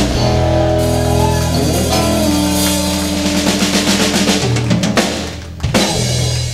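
Live country band of electric guitar, bass guitar, keyboard and drum kit playing the closing bars of a song: held chords over drums, ending on one sharp final hit that rings out.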